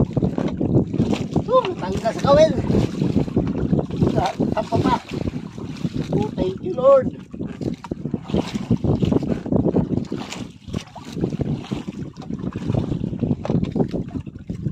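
Wind buffeting the microphone over the rush and splash of sea water against the hull of a sailing outrigger boat. A couple of short voice sounds come through, about two seconds in and again around seven seconds.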